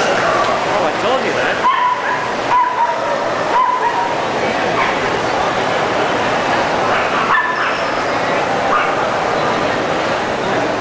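A small dog barking in short, high yaps: three about a second apart starting near two seconds in, and one more about seven seconds in. Steady chatter of a crowded hall runs underneath.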